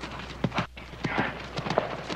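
Hoofbeats of a ridden horse on dirt ground, a quick uneven run of strikes.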